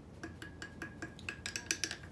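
Wooden stir stick clinking against the inside of a small glass jar while stirring citric acid into warm water: a quick, uneven run of light clicks, busiest in the second half, with a faint ring from the glass.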